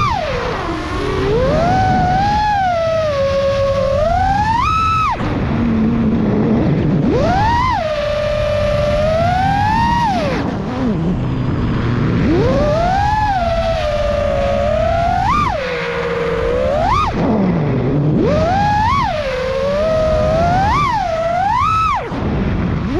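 FPV quadcopter's XING-E Pro 2207 2750 KV motors spinning 4934 S-Bang props, heard from the onboard camera. The whine glides up and down in pitch with each throttle punch and chop, the swells coming quicker near the end, over a rush of prop wash and wind.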